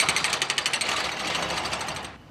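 Excavator-mounted hydraulic breaker hammering on concrete: a fast, even rattle of blows that fades out near the end.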